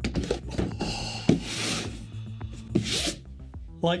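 Background music under a cardboard fork box being set down and slid across a wooden tabletop: a knock about a second in, then two rubbing scrapes.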